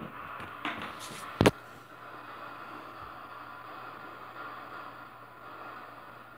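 Faint steady hiss with a single sharp click about a second and a half in.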